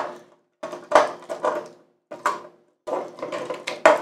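Plastic joints and parts of a Transformers Optimus Prime action figure clicking and rattling as it is twisted and folded during transformation, in irregular clusters of clicks.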